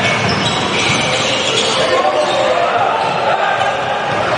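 Basketball being dribbled on a hardwood court, with players and spectators calling out over the court.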